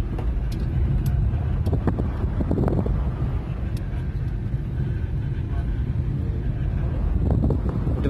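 Car in motion heard from inside the cabin: a steady low rumble of engine and road noise.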